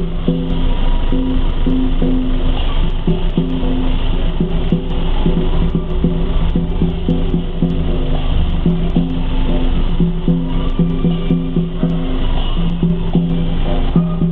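Teochew big gong-and-drum ensemble (lor kor) playing: a melody of held notes changing every half second or so, over a dense run of percussion strokes.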